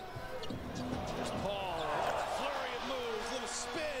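Basketball TV broadcast audio at low level: a commentator's voice over steady arena crowd noise, with a basketball being dribbled on the hardwood court.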